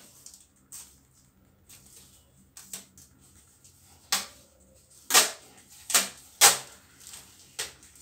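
Brown adhesive tape pulled off its roll in short, sharp rips, about seven times, the loudest three close together just past the middle, as it is wound around a hand.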